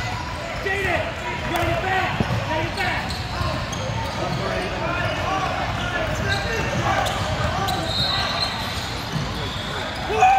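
Basketball dribbled on a hardwood gym floor, over a steady babble of many players' and spectators' voices in a large hall.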